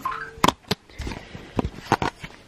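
A few sharp knocks and clicks, four in two seconds, from a camera being moved about and a dresser drawer of toiletries being handled.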